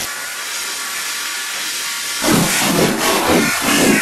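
Slowed, pitch-shifted electronic dance music: a steady hissing white-noise effect with almost no bass for about two seconds, then the beat comes back in with heavy low pulses.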